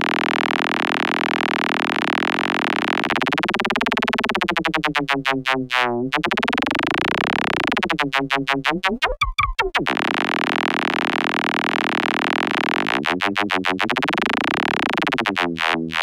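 Electronic audio loop played through the Glitch 2 plugin's Stretcher effect: a dense, buzzing drone with sweeping, phasing patterns and short choppy stutters, about six and nine seconds in and again near the end. The stretch slows as its speed setting is turned down.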